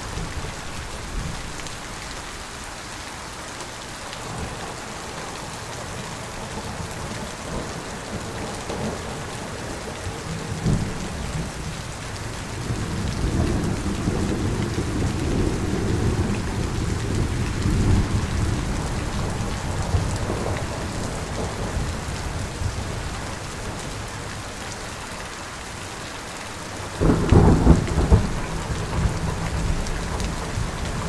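Steady heavy rain with thunder: a low rolling rumble swells in past the middle and fades, then a sharper, louder thunderclap breaks near the end.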